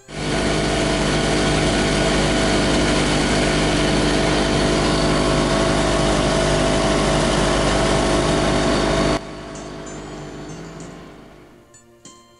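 A Johnson 70 two-stroke outboard motor running at speed, with a loud rush of wind and water. It comes in abruptly, drops suddenly to a lower level about nine seconds in, and fades away near the end.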